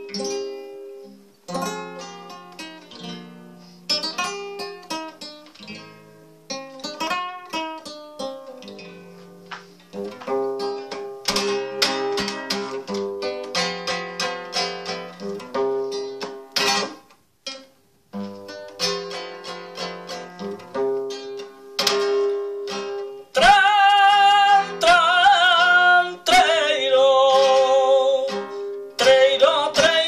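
Nylon-string flamenco guitar playing a farruca: strummed chords and picked runs over a repeated bass note. About three quarters of the way through, a man's voice comes in singing flamenco cante over the guitar.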